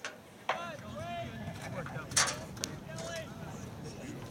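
Distant voices of players and spectators calling out across a soccer field, with a few sharp knocks, the loudest about two seconds in.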